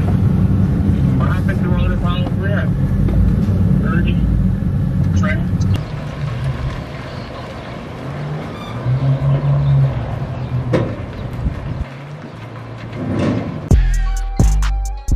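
A vehicle engine running: a loud, steady low rumble that drops to a quieter run about six seconds in, with a brief steadier, higher note a few seconds later. Voices are faint beneath it.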